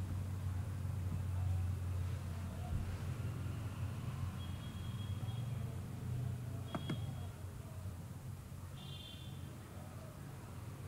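Steady low background hum of the recording setup, with one sharp click about seven seconds in and a brief faint high tone near the end.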